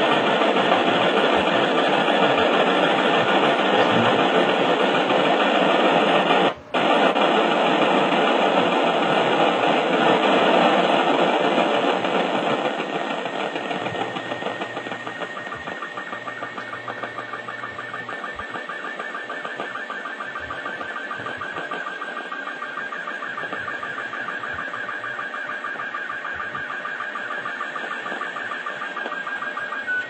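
Hiss from an FM radio receiver tuned to the SEEDS CO-66 satellite downlink on 437.485 MHz. The loud static drops out for an instant partway through, then eases off after about twelve seconds as the satellite's weak signal comes up. A faint steady high tone rises out of the noise in the second half.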